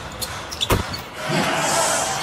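Basketball dribbled on a hardwood court, with one loud bounce a little under a second in. Arena noise and voices grow louder in the second half.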